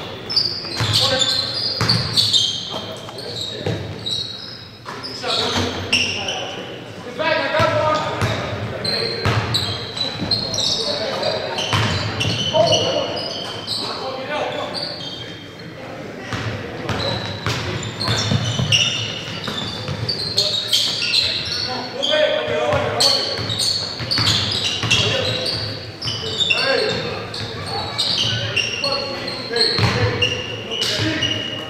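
A basketball game on a hardwood gym floor: repeated ball bounces, short high sneaker squeaks and players' shouts, all echoing in a large hall.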